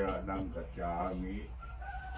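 An old man chanting a Buddhist prayer, monk-style, in a steady, level-pitched recitation: two short phrases in the first half, then a quieter pause.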